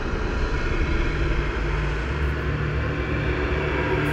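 A steady, dense low rumble with a hiss above it, holding at a constant level: an ominous ambient drone.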